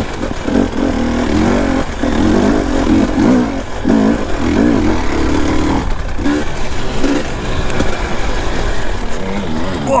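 Enduro dirt bike engine heard from the rider's own bike, revs rising and falling again and again as the throttle and clutch are worked along a rough trail.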